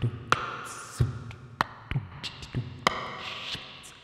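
Beatboxed percussion played as a loop: deep kick-like thumps and sharp snare-like cracks with small clicks in a slow, sparse pattern that repeats about every five seconds.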